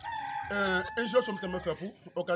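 A rooster crowing in one long, drawn-out call that dips slightly in pitch as it ends, with a man talking over it.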